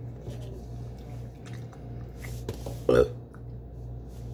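A short, loud burp about three seconds in, followed by a brief laugh, over faint clicks of a fork and a steady low hum.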